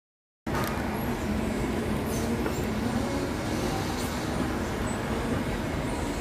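Silent for about half a second, then a steady low rumble of background noise, like traffic or a running vehicle, with a couple of faint ticks.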